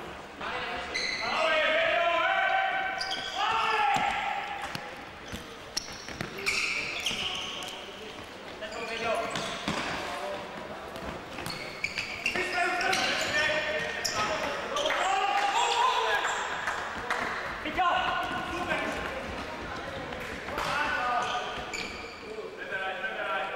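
Futsal players shouting to each other during play, in raised high voices that come again and again, with short thuds of the ball being kicked and bouncing on the wooden court.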